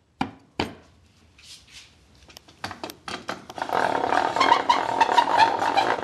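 Two sharp clicks as the router table insert is seated, then from about halfway on a continuous rattling grind of a homemade wooden gear router lift being cranked to lower the router.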